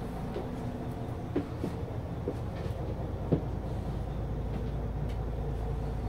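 Hyundai Universe coach engine idling, a steady low rumble heard inside the passenger cabin. A few light knocks come in the first half, and the rumble grows a little stronger about four seconds in.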